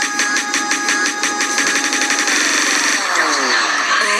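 Electronic dance music from a DJ mix: a fast, even beat with a steady high synth tone, which a little over two seconds in gives way to a falling pitch sweep under a rising wash of noise, a transition effect between tracks.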